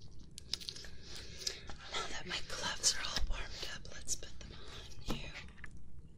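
Latex surgical gloves being stretched, snapped and rubbed close to the microphone: a string of sharp crackles and snaps, busiest in the middle.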